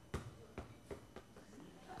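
A ball bouncing on a hard floor after the stacked-ball drop, four knocks coming quicker and fainter as it settles.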